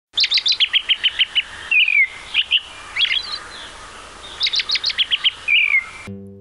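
Songbird singing: a quick run of high chirps followed by a short falling whistle, heard twice.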